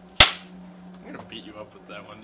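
Film clapperboard snapped shut once: a single sharp wooden clack, the loudest thing by far.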